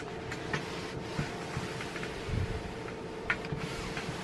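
Hand clothes iron sliding over dry cotton muslin on an ironing board: a soft, steady swishing with a few light clicks and a dull bump a little past halfway, over a faint steady hum.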